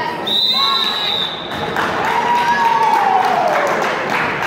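A referee's whistle blows one steady, high blast about a second long near the start, the signal that ends a wrestling bout on a pin. Spectators shout and cheer, with one long falling shout in the second half.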